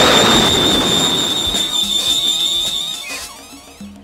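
Transformation sound effect with music: an explosion-like burst dies away over about three seconds under a steady high ringing tone. The sound fades out near the end.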